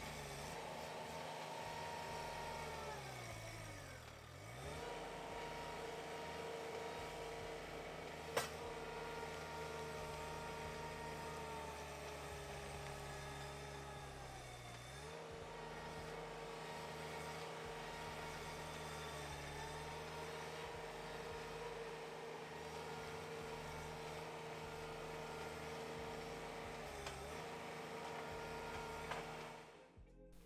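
Ditch Witch stand-on mini skid steer's engine running under load while it drags a heavy log across loose dirt. Its engine speed sags deeply about four seconds in and again around fifteen seconds, then picks back up, as the machine strains and bogs on the uneven ground. A single sharp click about eight seconds in.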